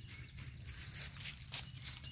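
Light handling noise of a metal carabiner being snapped onto a foam retrieving dummy: a few faint clicks and rustles, the sharpest about one and a half seconds in.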